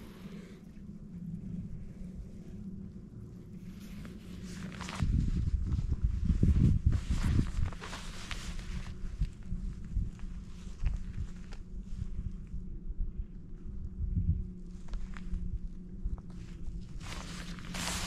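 Steady low electric hum of a bow-mounted trolling motor, with scattered small knocks and rustles from handling on the boat deck and a louder low rumble about five to eight seconds in.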